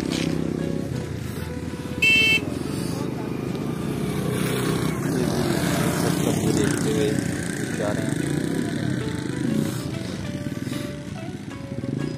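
Motorcycle engines running steadily among a group of riders, with a short, loud beep about two seconds in.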